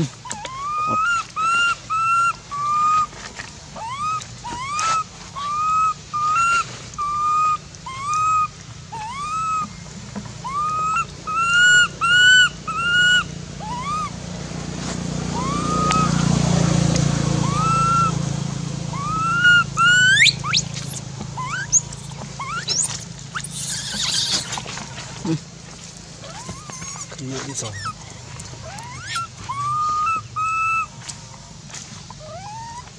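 Baby macaque crying in a tantrum: a long run of short, high cries, each rising and then levelling off. Midway a low rumble swells and fades, and later come a few sharper, steeply rising squeals.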